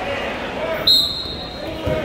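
A sharp, high whistle blast about a second in, held for almost a second, over gym crowd voices, with a dull thump on the mat near the end.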